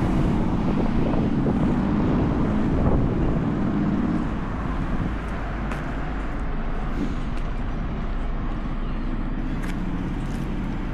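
City street traffic: motor vehicle noise that is loudest for the first four seconds or so as a vehicle passes, then eases to a steadier, quieter hum.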